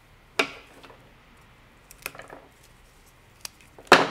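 Quiet handling of hydrangea and a plastic dish of wet floral foam: a sharp knock about half a second in, a softer rustle around two seconds, and a faint click near the end.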